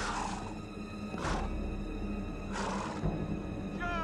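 Low, tense film-score drone under a galloping horse's loud, rasping breaths, three of them a little over a second apart.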